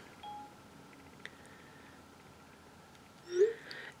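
Quiet room tone with a single faint click about a second in, then a brief rising hum from a woman's voice near the end.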